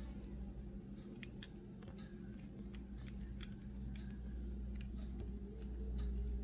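Faint, irregular small clicks of fingers handling a diecast metal toy car, over a steady low hum.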